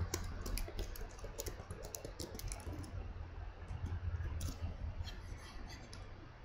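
Typing on a computer keyboard: a quick run of key clicks over the first few seconds, thinning to a few scattered clicks later on.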